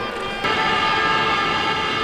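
A horn sounding one long, steady blast of several tones at once. It starts abruptly about half a second in and holds without changing pitch.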